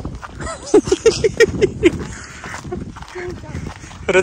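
Footsteps crunching on a dry dirt path, with sharp clicks from steps on dry ground. About a second in, a quick run of about seven short pitched notes sounds over them.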